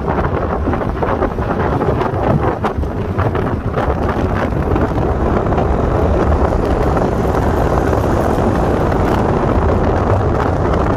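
Wind buffeting the microphone of a camera outside a moving car's window, over steady low road and tyre noise from the car at highway speed.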